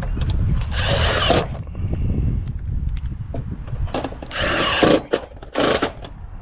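Cordless impact driver running in short bursts, driving self-tapping screws through aluminum trim coil into the gutter: one burst about a second in, then two shorter ones near the end.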